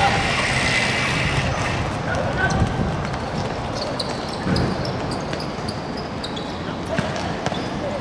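A football being kicked and bouncing on a hard outdoor court, a few sharp thuds over the players' shouts and calls.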